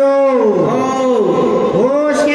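A held note of Meitei Lai Haraoba ritual music slides steeply down in pitch about a third of a second in, rises back, then dips and rises again near the end.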